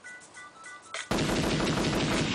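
Faint electronic beeps and ticks, then about a second in a loud burst of rapid machine-gun fire: a gunfire sound effect opening a dancehall track.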